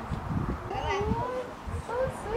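Voices in the background: a drawn-out, gliding vocal sound about half a second in, over general outdoor party noise.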